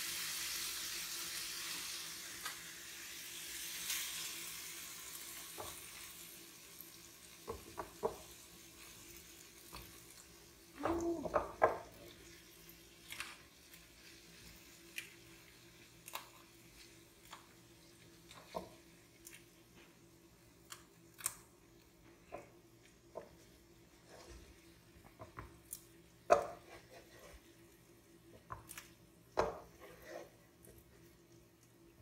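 A frying-pan sizzle dying away over the first few seconds, then scattered knocks and scrapes as a wooden spatula pushes browned beef cubes out of a frying pan into a stainless steel stockpot of soup.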